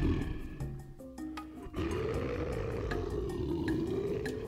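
A lion's roar sound effect, one long roar starting a little under two seconds in, over light background music.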